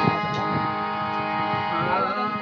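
Harmonium holding a sustained chord while a wooden clapper and tabla tap out a quick clicking rhythm over it. A wavering sung note enters near the end.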